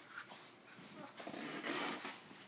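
Small dog rubbing its face and body against bed covers to scratch an itch on its nose, with breathing and snuffling noises and the rustle of the fabric coming in irregular bursts, strongest near the end.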